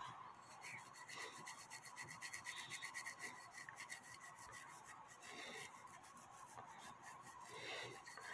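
Soft-bristled brush scrubbing a brass clock movement plate in quick, faint back-and-forth strokes, loosening grime from the plate.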